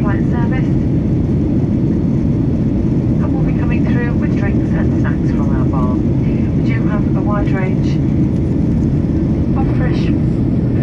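Steady low rumble of an airliner's engines and airflow heard inside the cabin in flight, with a voice talking over it at times.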